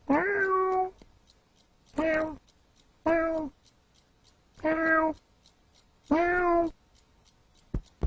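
A cat meowing five times, each meow short and level in pitch, a second or so apart, over a faint steady ticking. A couple of quick taps come near the end.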